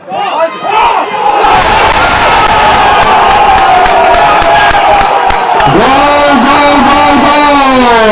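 A man shouting a long, drawn-out goal call, held on one high note for several seconds, then a lower held shout that drops in pitch and dies away near the end, over loud crowd noise.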